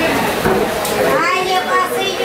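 Hubbub of many voices in a busy meat market, with a high, wavering goat bleat in the second half.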